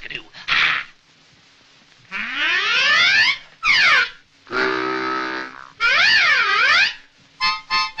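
Harmonica played in a cartoon score: after a brief pause, sweeping slides up and down the reeds, a held chord in the middle, then short repeated chords near the end.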